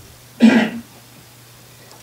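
A person clearing their throat once: a short, rough burst about half a second in, over a faint steady hum.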